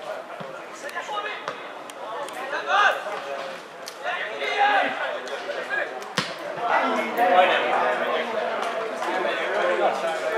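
Football players shouting and calling to each other during play, several voices overlapping. A single sharp thump of a ball being kicked comes about six seconds in.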